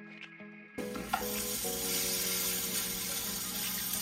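Grated-potato pancakes frying in oil in a pan, sizzling steadily. The sizzle cuts in suddenly under a second in, with quiet background music before it and underneath.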